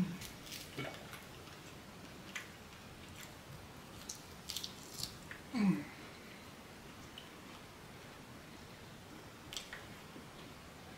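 A person eating: chewing with scattered small wet mouth clicks, and a short hummed "mm" of enjoyment a little past halfway.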